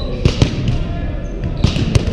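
Echoing sharp thuds of volleyballs being hit and bouncing on a gym's hardwood floor, about four in two seconds, over a steady murmur of players' voices in the hall.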